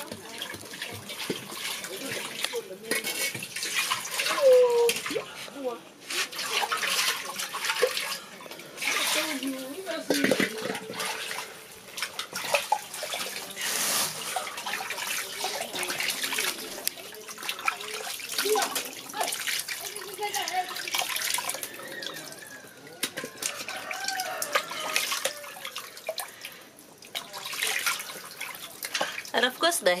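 Water splashing and sloshing in a metal cooking pot as raw chicken pieces are washed in it by hand.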